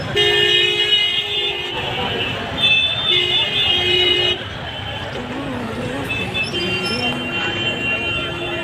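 A car horn honking in two long, steady blasts of about two seconds each, with a fainter honk near the end, amid the chatter of a street crowd.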